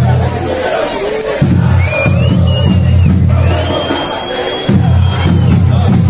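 Loud music with a heavy bass beat over a crowd of football supporters shouting and chanting. The bass cuts out briefly about a second in and again about four seconds in, leaving the crowd.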